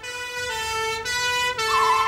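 Police car siren sounding: a steady horn-like tone that steps to a new pitch twice and warbles briefly near the end.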